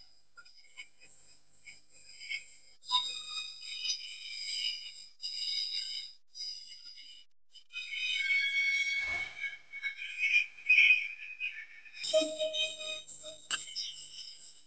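Shrill whistles over thin, tinny rhythmic dance music, with a longer wavering whistle past the middle.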